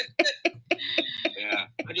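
A woman laughing hard in a string of short, breathy bursts.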